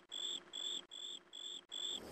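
A cricket chirping in an even rhythm of short, high-pitched pulses, about two and a half a second.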